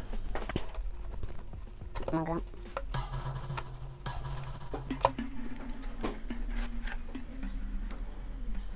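Screwdriver working a rusted screw out of the base of an old amplifier's mains transformer: scattered clicks and scrapes of metal on metal, the loudest click about five seconds in, with a faint steady high whine behind.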